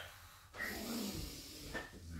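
A person breathing out in one long, breathy exhale during a warm-up exercise. It starts about half a second in and lasts just over a second.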